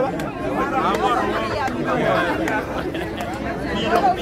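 Crowd chatter: many people talking and calling out at once close around, their voices overlapping throughout.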